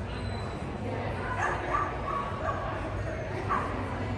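A dog barking in short, high yips, several times from about a second in, the way an agility dog barks while running a course.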